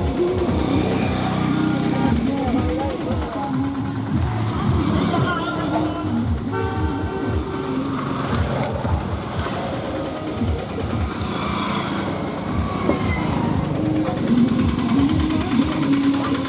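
Road traffic: vehicle engines and passing motorcycles running steadily under people's voices, with a horn toot about six and a half seconds in.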